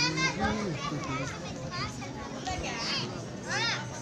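Children's voices calling and shouting while they play, several high voices overlapping, with one loud high-pitched call near the end.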